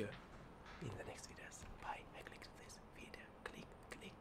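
A man's voice, very quiet and close to a whisper, in short faint snatches, with a few small clicks near the end.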